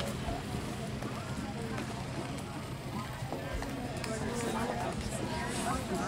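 Indistinct background talking over a steady low hum, with no clear words.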